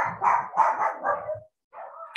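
A dog barking in the background, about five quick barks in a row, then a fainter sound near the end.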